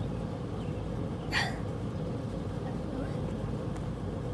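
Steady low background rumble with a faint hum, and one short vocal sound about a second and a half in.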